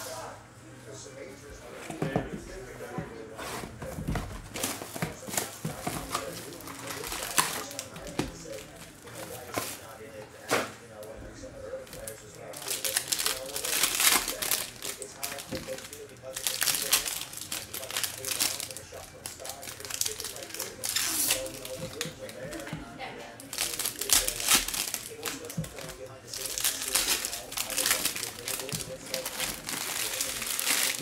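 Foil trading-card pack wrappers crinkling and being torn open, in repeated bursts from about halfway through, with cards being handled.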